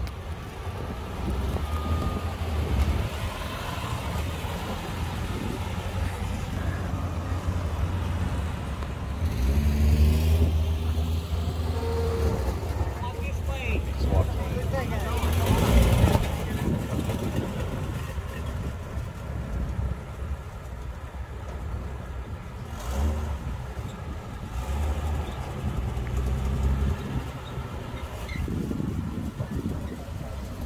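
Engines of 1948 Davis Divan three-wheeled cars running at low speed as the cars are driven into position, with a steady low rumble. The loudest moment comes about halfway through, as one car drives past close by. Voices talk in the background.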